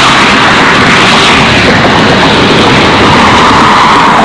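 Loud, steady roar of wind buffeting a phone's microphone, mixed with traffic on the road alongside.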